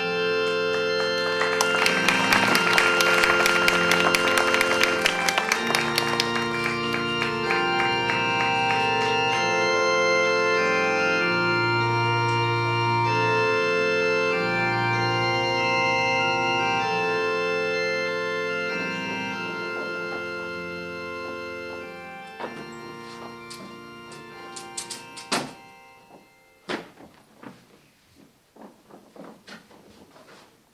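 Organ music playing slow, sustained chords, fading out after about twenty seconds. A few separate knocks and thumps follow near the end.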